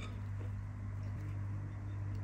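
Quiet room with a steady low hum, and faint soft scraping as a spatula pushes thick cake batter out of a glass bowl into a cake tin.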